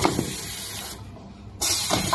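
Compressed air hissing from a wipe packing machine's pneumatic valves and cylinders in two sharp-starting bursts. The first lasts about a second, and the second begins about one and a half seconds in.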